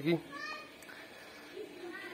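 Faint, distant child's voice calling briefly about half a second in, high pitched, over quiet background.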